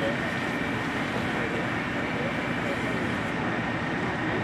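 A steady rumble of vehicle noise with indistinct voices talking in the background.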